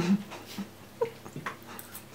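Knife and fork clicking on china plates, with a sharp clink at the start, a short squeak about a second in, and a few lighter clicks.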